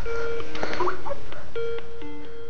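Skype incoming-call ringtone playing from a laptop: a repeating electronic tune of steady held tones at a few pitches.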